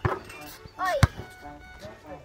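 A basketball thudding on an outdoor asphalt court, loudest about a second in, just after a short voice exclamation.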